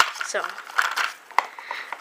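Plastic toy packaging crinkling and clicking as it is handled, with a sharp click at the start and another about a second and a half in.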